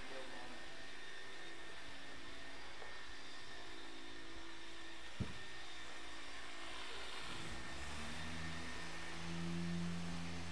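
Steady whirring hum of electric machinery running. A deeper hum comes in about eight seconds in and grows louder, and there is one sharp click near the middle.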